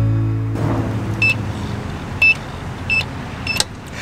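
An acoustic guitar chord rings and stops about half a second in. Then come four short, high electronic beeps spaced under a second apart: key presses on the keypad of a coded lock box, over outdoor background noise.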